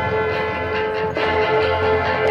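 High school marching band music: the brass holding a sustained chord, moving to a new chord just over a second in.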